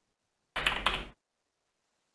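Typing on a computer keyboard: a quick run of several keystrokes about half a second in, lasting just over half a second.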